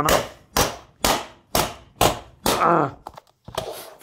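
A running shoe whacking a plastic Agfa VHS cassette against a wooden floor, about two sharp blows a second, six in a row, with a few weaker knocks near the end. The cassette holds up and does not break under the shoe.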